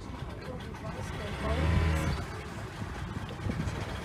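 A motor runs with a steady low hum, with people's voices over it; both swell louder for about half a second near the middle.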